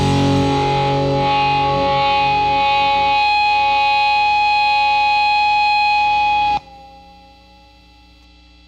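The last chord of a punk rock song: a distorted electric guitar chord held and ringing out. It cuts off sharply about six and a half seconds in, leaving a faint ring.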